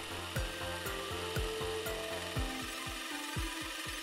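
Cordless drill running, its bit boring through a PVC pipe end cap and pipe wall with a steady hiss, over background music with a steady beat of about four low thumps a second.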